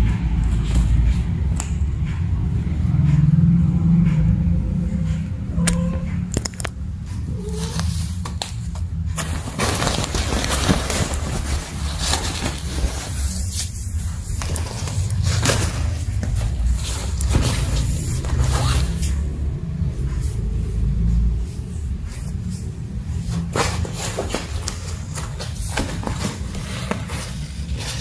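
Nylon pop-up cat tunnel rustling and scraping irregularly as cats move in and against it, over a steady low rumble.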